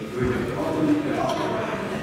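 Speech only: indistinct talking, with no other sound standing out.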